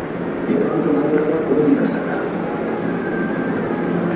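Steady whooshing of a room evaporative air cooler's fan, with faint murmured voices underneath during the first half.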